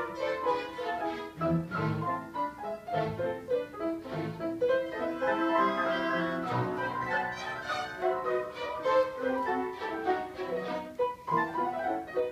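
Youth orchestra playing classical music, with the violins most prominent, in a busy passage of quickly changing notes.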